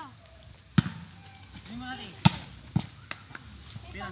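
Hands striking a volleyball during a rally, as a few sharp slaps. The loudest come about a second in and just after two seconds, with lighter hits following.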